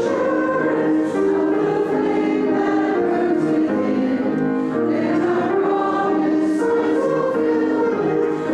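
Congregation singing a hymn together, many voices holding each note for about half a second to a second as the melody moves step by step.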